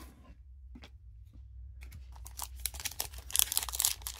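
A foil trading-card pack wrapper being torn open and crinkled by hand, starting about two seconds in and growing louder toward the end. Before that there are only a few faint clicks over a low hum.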